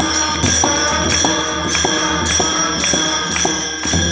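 Group devotional singing with two pakhawaj barrel drums played by hand and small hand cymbals ringing in a steady rhythm. Drum and cymbal strokes fall about twice a second.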